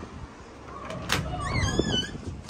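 A pub door knocking about a second in, then creaking on its hinges with a high, wavering squeak near the end.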